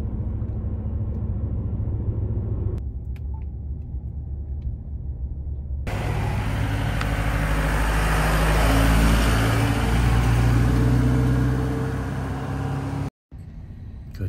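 Low, steady road rumble inside a moving pickup truck's cab. After a cut, a green open-frame military utility vehicle's engine runs close by, swelling to its loudest a few seconds later and then easing off. The sound cuts out abruptly near the end.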